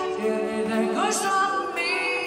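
Female lead vocal singing over sparse live-band backing, with a few held tones beneath and no bass or drums: a near a cappella breakdown in the song.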